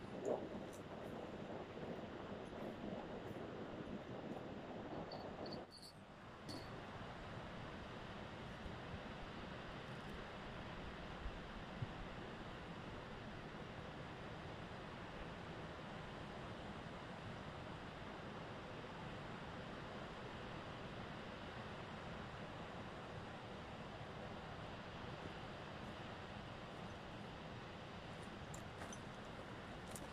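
Steady, faint outdoor background noise, an even hiss, with a short dip about six seconds in and a few faint clicks near the end.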